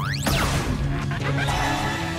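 Dramatic background score under a cartoon blaster-shot sound effect: a fast rising whoosh that peaks just after the start and then sweeps back down as the slug is fired.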